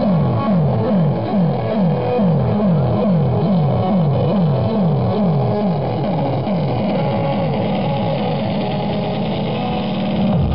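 A low tone that sweeps downward over and over, about two and a half falls a second, over a rough buzzing noise.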